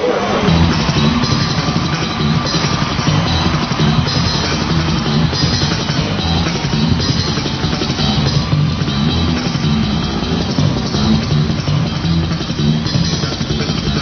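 Rock music with a driving electric bass line and drum kit; the bass repeats a low pattern under the drums and guitar.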